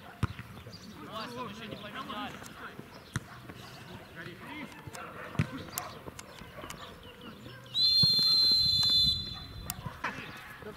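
Football match sounds: a few sharp thuds of the ball being kicked and players' shouts, then a referee's whistle blown in one long, loud, steady blast of just over a second near the end.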